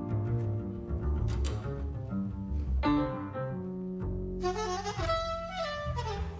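Live jazz trio: an upright double bass plucks a low walking line under piano chords. About four seconds in, a soprano saxophone enters with a high melodic phrase that moves step by step.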